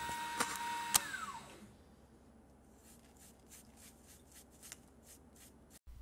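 Mini milling machine's motor whining steadily, then two sharp clicks, and the whine falls in pitch and dies away as the machine winds down within the first two seconds. After that it is quiet, with faint light ticks.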